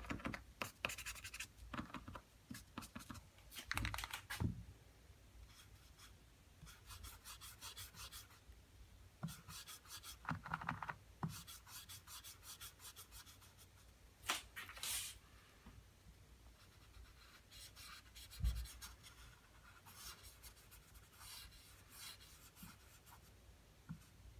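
Posca paint marker nib scratching and rubbing across a surfboard in short, irregular strokes as wet paint is blended, with a few light knocks.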